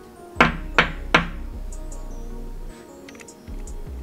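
Three sharp knocks in quick succession, about a third of a second apart, over steady background music.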